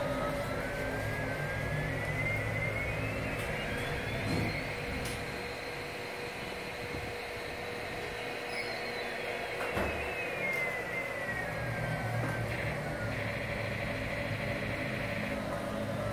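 Electronic engine sound effect from a baby walker's toy steering panel: a thin whine that climbs in pitch for about four seconds, holds, then winds back down about ten seconds in, over a steady low hum.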